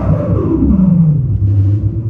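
Heavily effected, distorted tone from an amplified banjo rig gliding steadily down in pitch over about a second, then settling into a low droning rumble.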